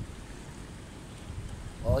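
Wind buffeting the microphone outdoors, a steady low rumble with no sharp clicks.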